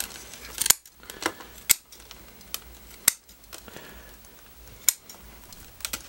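Bonsai scissors snipping through the fine roots of a trident maple root-over-rock planting: a handful of sharp snips at irregular intervals, a second or two apart.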